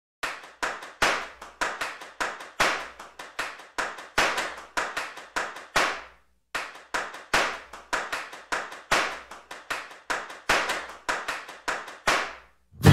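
Hand claps in an uneven rhythm, about three a second, each with a short reverberant tail, pausing briefly about halfway through.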